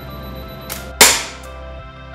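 Crossbow firing a bolt: one loud, sharp crack about a second in that dies away over half a second, with a faint click just before it, over background music.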